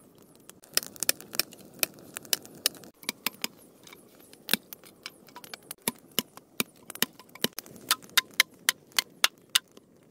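A blade knocking against wood: a run of sharp, light knocks, irregular at first, then settling near the end into a quick steady rhythm of about three to four strokes a second.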